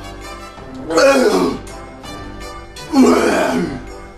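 A man gags twice on a mouthful of toothpaste sandwich: two loud throat noises, about a second in and about three seconds in, each falling in pitch. Orchestral background music plays underneath.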